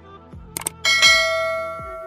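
Subscribe-button sound effect: two quick mouse clicks a little past half a second in, then a bright bell chime that rings out and slowly fades. Soft background music plays underneath.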